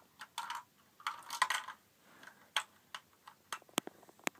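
LEGO plastic parts being handled: a couple of short rustling scrapes, then a run of sharp, separate plastic clicks and taps.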